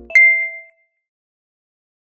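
A single bright ding, an editing chime sound effect, struck once and ringing out over about half a second.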